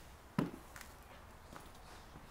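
A single sharp knock about half a second in, followed by a couple of faint clicks.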